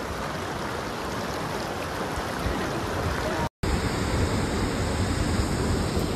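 A shallow mountain stream flowing over stones: a steady rushing of water. It cuts out for an instant about three and a half seconds in.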